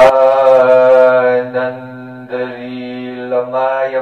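A man chanting a devotional prayer in long held notes. It is loudest for the first second and a half, then softer with brief breaks between phrases.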